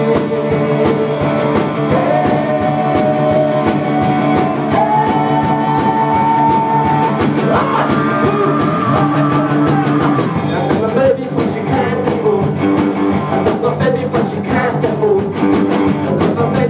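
A rock band playing live: drums, bass and electric guitars in an instrumental break. A lead line holds long notes that step up in pitch over the first eight seconds, then turns into busier, shorter phrases.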